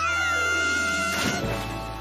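A cartoon mouse's long, high-pitched squeaky cry held on one note over background music. It breaks off about a second and a half in with a splash into water.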